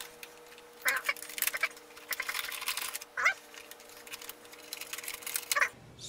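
Stiff plastic blister packaging of an epoxy syringe crackling in short bursts as it is handled in gloved hands, with a couple of brief squeaks. A faint steady hum runs underneath.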